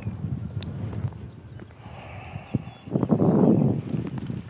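Handling noise from a body-worn camera as the wearer moves: scattered knocks and rustling over a low rumble, with a louder rushing noise on the microphone about three seconds in.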